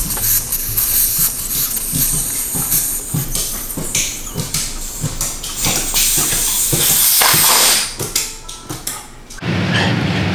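Air hissing out of the valve of a Onewheel GT tire as it is let down. The hiss is loud and steady, then fades near the end. Background music with a soft beat plays under it.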